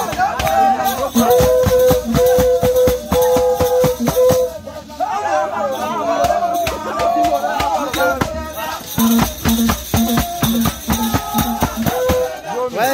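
Live music for a Goli mask dance: a steady run of shaken rattles and percussion strokes, with long held pitched notes over them.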